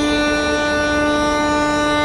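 Uilleann pipes sounding one long held note, steady and reedy.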